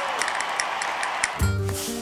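Olive oil poured into the steel bowl of a Bosch Cookit cooking robot, a steady hiss for about the first second and a half. Then background music with low held notes comes in.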